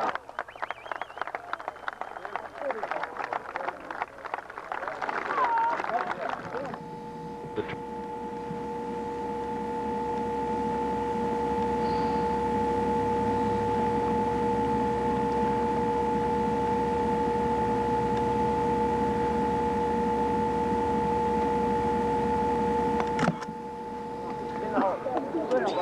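A golf gallery clapping, with a few voices, for the first several seconds. Then a steady hum with two fixed tones over a rushing noise, slowly growing louder for about sixteen seconds before it cuts off suddenly near the end.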